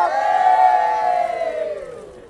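A group of people cheering together in one long held shout that slowly falls in pitch and fades away.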